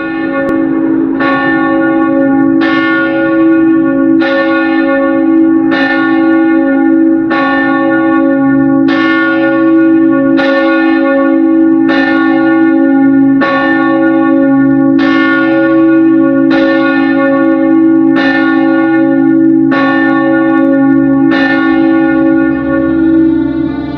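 A church bell tolling steadily, about fifteen strikes roughly a second and a half apart, each ringing on into the next.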